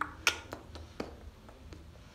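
A few sharp finger snaps at an uneven pace, the clearest about a quarter second and one second in.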